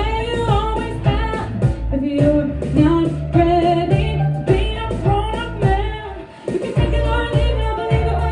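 A woman singing a pop song live into a handheld microphone over recorded backing music with bass and a beat, with a short drop in the accompaniment about six seconds in.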